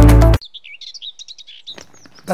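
Loud music cuts off abruptly shortly after the start, followed by small birds chirping quickly and faintly in a high register.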